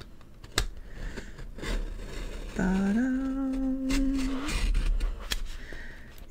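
Utility knife blade slicing through the paper pages of a paperback book, with scattered short clicks and scrapes as it cuts. About halfway through, a person hums one held note for about two seconds.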